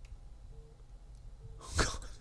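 A man's single short, sudden burst of breath near the end, a laugh forced out through the nose, over quiet room tone.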